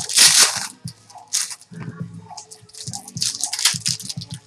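Trading card pack wrappers crinkling and tearing and cards being shuffled in the hands, in several short rustling bursts, the loudest right at the start.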